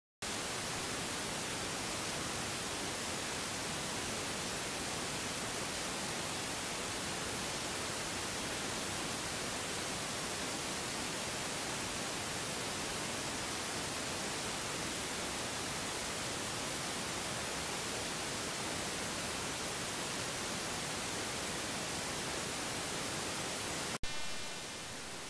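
Steady, even static hiss from the recording's background noise, cutting in abruptly right at the beginning with no change in level.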